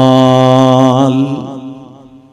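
A man's voice holding one long, steady chanted note that breaks off about one and a half seconds in and trails away in echo.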